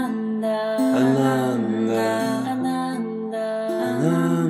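Live mantra chanting in call-and-response style with instrumental accompaniment: long held notes that step from one pitch to the next.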